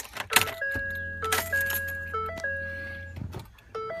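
Keys clicking as the ignition key goes in. Then a low steady hum runs for about two seconds and stops, under a run of electronic tones stepping between a few fixed pitches, like a simple melody or chime.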